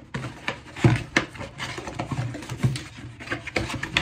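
Cardboard box being handled and opened by hand: an irregular run of clicks, taps and light knocks.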